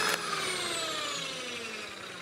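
Electric hand mixer whipping egg whites into meringue in a glass bowl, its motor whine sliding steadily lower in pitch and fading.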